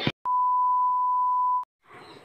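A single electronic bleep: one pure, steady tone held for about a second and a half, starting and stopping abruptly.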